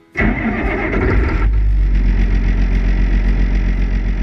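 Large farm tractor's diesel engine running under way, heard close up from a camera on its hood. It comes in abruptly with a brighter, higher note for the first second and a half, then settles into a steady low drone.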